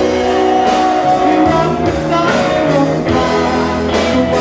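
Rock band playing live, with electric guitar to the fore over bass and a steady drum beat.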